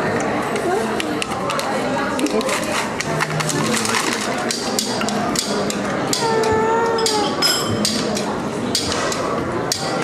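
Restaurant table clatter: many sharp clinks and knocks of plates and cutlery, over a steady hubbub of diners' voices. About six seconds in, a high, drawn-out voice sounds for about a second, a child's call.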